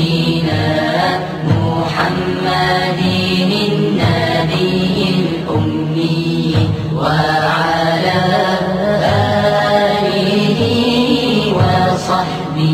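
Arabic devotional chant, a salawat on the Prophet Muhammad, sung in slow, drawn-out lines over a steady low drone.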